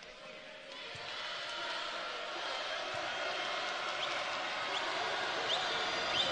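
Steady crowd noise filling a basketball gym while a basketball is bounced on the hardwood court before a free throw, with a few short high sneaker squeaks near the end.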